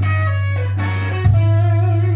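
Electric Telecaster guitar playing a sax-style legato single-note lead line, with bends and slides in pitch. A strong held low note sounds underneath and changes to a new note about a second in.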